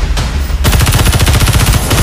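Film sound effect of a rotary minigun firing: a very fast, unbroken rattle of shots that starts about half a second in.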